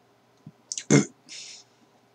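A few short, sharp clicks, the loudest about a second in, followed by a brief soft hiss.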